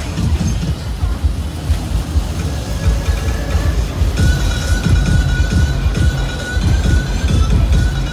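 Loud fairground music with heavy, pulsing bass, mixed with the rumble of a swan-car track ride running on its rails. A steady high tone comes in about four seconds in.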